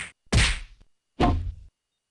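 Cartoon fight sound effects: a run of whacking hits, the loudest about a third of a second in and another about a second later, after which the audio cuts out abruptly.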